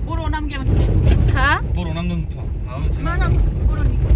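People talking inside a moving car, over the steady low rumble of the engine and road.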